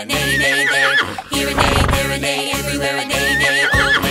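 Horse whinny sound effect heard twice, a wavering trill that drops at the end, over bouncy children's-song backing music. The first whinny comes just after the start and the second near the end.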